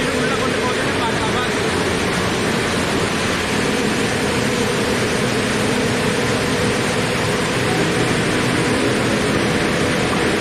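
Steady, unbroken machine noise of a large circular saw cutting granite blocks, a wide grinding hiss with a faint underlying hum.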